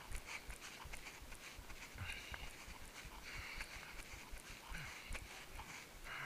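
Footfalls of someone running on grass, dull thuds two or three a second, with heavy breathing close to the microphone.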